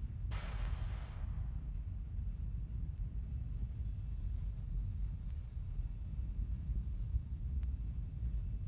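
Launch-pad ambience around a fuelled Falcon 9: a steady low rumble, with a sudden hiss of venting gas about a third of a second in that fades out over about a second.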